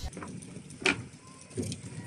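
A sharp knock about a second in and a softer thump just over half a second later, over a steady outdoor background noise.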